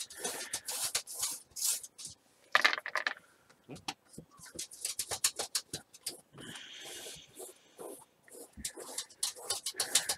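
A paintbrush scrubbing paint onto a stretched canvas in short strokes, several a second, with a steadier stretch of brushing around seven seconds in.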